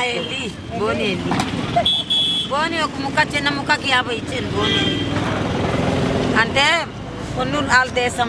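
Market voices talking, over the steady running of a motor vehicle engine that is most prominent in the second half.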